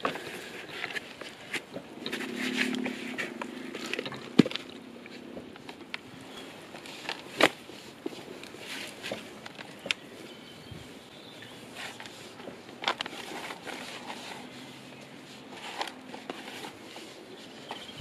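Hands pressing and scraping potting compost around a transplanted Cape gooseberry seedling in a plastic pot: soft rustling and crumbling of soil. There are two sharp clicks, a few seconds apart.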